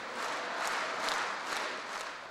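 A large audience applauding, a steady sound of many hands clapping that eases off a little near the end.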